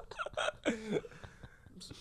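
Men laughing in short, breathy bursts that die away a little over a second in.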